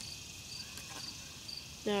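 A cricket chirping steadily: short, high chirps about twice a second over faint outdoor background noise.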